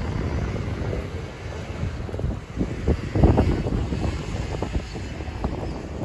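Wind buffeting the microphone: an uneven low rumble that swells in gusts, strongest about three seconds in.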